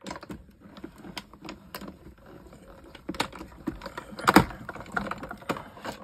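Irregular light clicks and taps of clear plastic die-cutting plates and cardstock being handled and stacked on a craft desk, with one louder knock about four seconds in.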